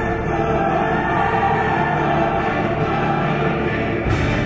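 Choral program music for a figure skating free skate: a choir singing over sustained orchestral-style accompaniment, steady in loudness.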